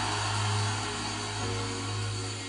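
A sustained low church keyboard note, with softer held notes joining about a second and a half in, over a steady hum of congregation noise.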